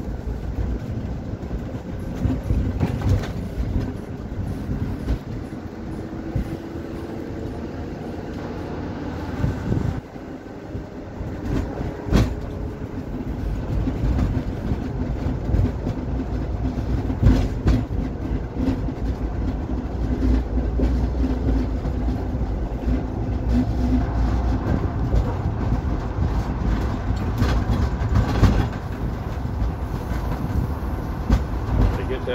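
Ambulance driving, heard from inside its rear patient compartment: a steady low road rumble with scattered knocks and rattles from the box body and fittings. The rumble drops briefly about a third of the way in, then builds again.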